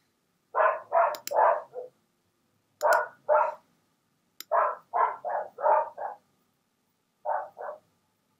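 A dog barking in four runs of two to five short barks, with pauses of about a second between runs.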